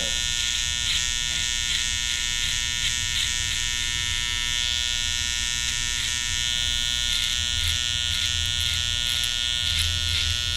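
Electric beard trimmer buzzing steadily as it is worked through a full beard.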